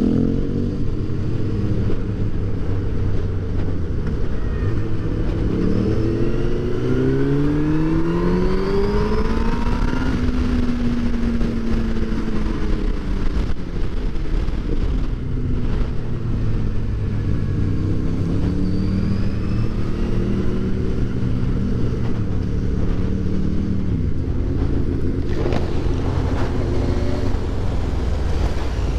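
Motorcycle engine heard from the rider's seat, with wind noise. The revs climb and fall with gear changes, rising over the first ten seconds and dropping again a few seconds before the end as it slows.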